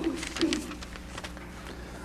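Faint paper rustling as Bible pages are turned, with two short low hums of a man's voice in the first half second, over a steady low electrical hum.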